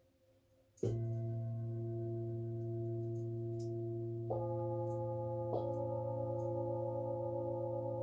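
Large metal singing bowls struck three times: once about a second in, again just past four seconds, and once more a second later. Each strike adds new tones that ring on together with a slow wavering beat.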